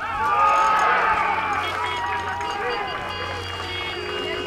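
Several voices shouting and cheering at once as a goal goes in, starting suddenly and loudest in the first second or two, then carrying on as a mixed clamour.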